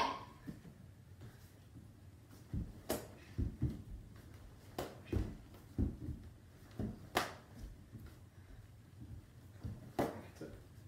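Irregular thuds of bare feet on a wooden floor and a few sharper smacks of kicks landing on a hand-held kick pad.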